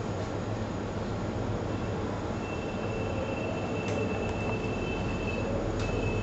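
Steady machine hum and hiss of room equipment, with a strong low mains-type hum. A thin high whine joins a little before halfway and holds, and there are two faint clicks in the second half.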